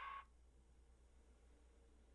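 Near silence with a faint low hum, after the preceding sound cuts off about a quarter of a second in.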